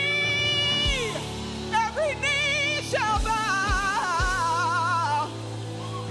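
A woman sings a live worship song with a band, holding long notes with strong vibrato and sliding through vocal runs, with no clear words. Bass guitar and kick drum play underneath, and the kick thumps a few times.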